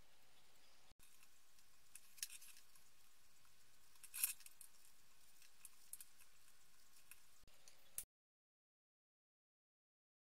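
Near silence with a few faint, short clicks from small parts being handled as ceramic capacitors are fitted into a circuit board by hand; the loudest click comes about four seconds in. The sound drops out completely for the last two seconds.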